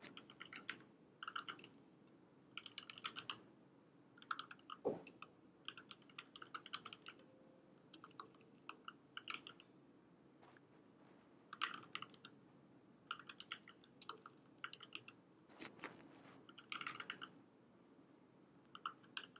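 Faint keystrokes on a computer keyboard, typed in short bursts with pauses between them, with one heavier key press about five seconds in.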